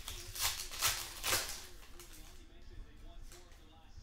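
Foil trading-card pack wrapper being torn open and crinkled, a run of crackling rustles in the first second and a half, then softer rustling as the cards are handled. Faint background music runs underneath.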